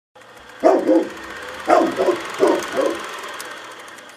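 A dog barking six times in three pairs of two, over a faint steady drone, as the sound of a studio logo intro; the sound fades out after the last pair.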